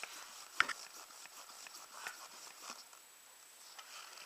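Hand pump and pressure gauge being handled on an outboard lower unit: a sharp click about half a second in, then a few faint ticks and knocks.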